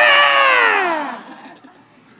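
A loud, drawn-out vocal imitation of Godzilla's roar ("rawr"), rising and then sliding down in pitch before fading out a little past a second in.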